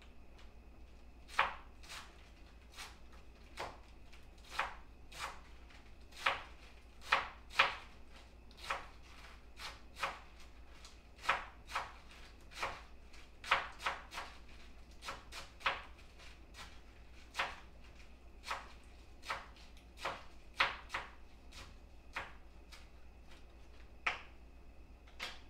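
Knife chopping vegetables on a cutting board: single sharp strokes at an uneven pace, roughly one or two a second.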